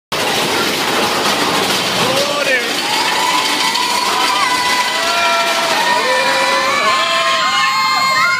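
Riders on a mine-train roller coaster yelling and screaming, with long held cries from a few seconds in, over the loud, steady rush and rattle of the moving ride.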